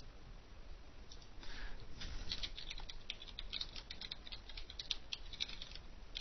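Typing on a computer keyboard: a few scattered keystrokes, then a quick run of light key clicks from about two seconds in.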